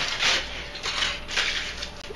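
A sheet of aluminum foil crinkling as it is handled and scrunched in the hands, in a run of short, irregular crackly rustles.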